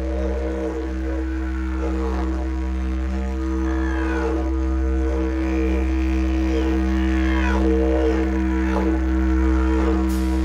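Background music: a steady low drone with gliding higher tones rising and falling over it.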